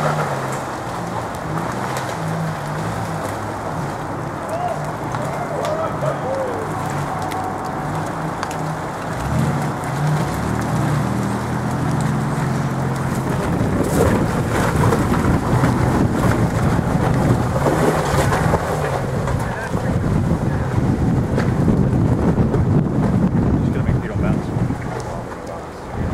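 Nissan Xterra engines working at low speed as the trucks crawl up a rocky, muddy off-road trail, the engine note stepping up and down with the throttle. Through the second half a rough rushing noise, wind on the microphone, covers much of it.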